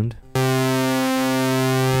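Native Instruments Massive software synthesizer holding a steady low note from two stacked, slightly detuned sawtooth oscillators, bright with many overtones. It starts just after a brief word of speech.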